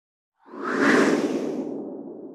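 Whoosh sound effect for an animated title-logo reveal. It starts about half a second in, swells to its peak near the one-second mark, then fades into a lower trailing rumble.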